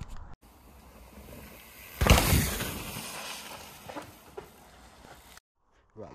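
Faint steady hiss and rustle on a GoPro action camera's microphone, with a loud rush of noise about two seconds in that fades over the next second, and a sudden cutoff near the end.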